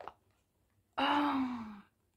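A woman's delighted sigh: one breathy vocal sound, about a second in, that falls in pitch and lasts under a second.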